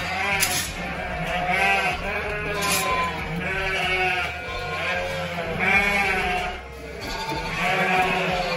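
Several sheep bleating, calls following one another and overlapping at different pitches, over a low steady hum.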